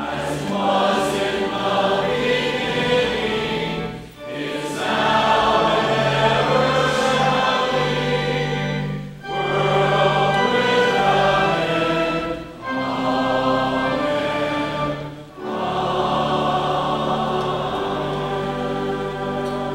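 Voices singing a hymn in chorus with pipe organ accompaniment, in sustained phrases broken by short pauses every few seconds.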